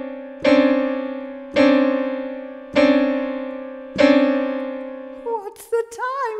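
Piano note struck four times, about once every 1.2 seconds. Each strike rings and dies away before the next.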